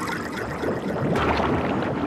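A small boat running through choppy water, its motor going under the sound of water rushing and splashing against the hull.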